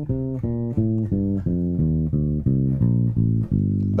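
Electric bass playing a G minor scale fingerstyle in single plucked notes, about four a second, ending on a longer held low note near the end.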